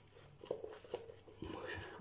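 Boar-bristle shaving brush working shaving-stick lather on a face: faint, soft brushing with a few light clicks.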